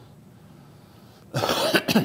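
A man clears his throat with a short, rough burst about a second and a half in.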